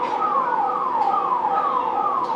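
Electronic siren sounding a fast, repeating downward sweep in pitch, about two and a half sweeps a second.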